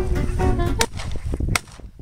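Two sharp shotgun shots about three-quarters of a second apart, over background music that cuts out just after the second shot, leaving low wind noise.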